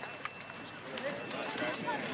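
Indistinct background voices and chatter around a baseball field, with a couple of faint ticks.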